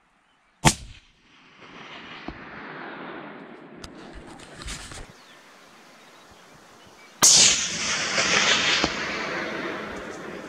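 Rifle shots from a Remington 700 in .284 Winchester: a sharp crack about half a second in, then about seven seconds in a second sharp crack followed by a couple of seconds of loud rolling noise.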